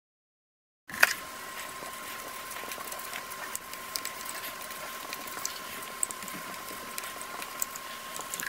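Silence, then about a second in a click and faint room noise with a thin steady whine, over which a felt-tip marker scratches quickly across paper in repeated writing strokes.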